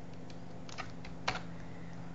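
Computer keyboard key presses: a couple of soft taps, then one sharper click a little past halfway, over a steady low hum.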